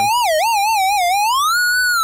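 Square-wave tone from the Chrome Music Lab browser oscillator, its pitch wobbling up and down about five times a second. About a second and a half in, it glides up to a higher pitch and holds there.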